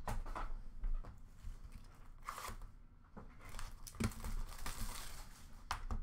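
Trading-card packaging being handled and torn open: crinkling and tearing of wrapper and cardboard, with a few sharp clicks, busiest in the last two seconds.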